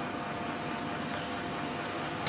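Steady background hiss and hum with a faint constant tone, and no distinct sounds.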